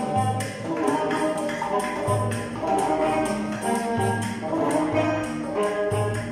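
Live oud and banjo playing a melody together, with hand percussion tapping out a regular beat.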